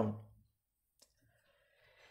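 A pause in a man's voice-over narration. His last word trails off in the first half-second, then there is near silence with one faint click about a second in and a faint breath near the end.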